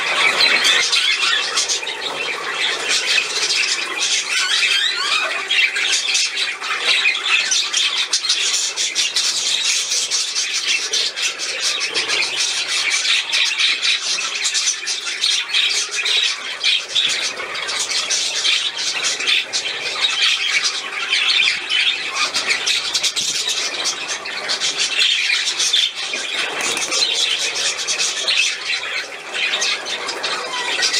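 Budgerigars chattering continuously, a dense run of short calls and squawks.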